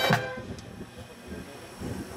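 A marching band's held brass chord cuts off just after the start and rings away. A quiet pause with faint low notes follows before the band's music picks up again at the very end.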